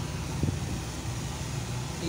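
Steady low rumble of running car engines and road traffic.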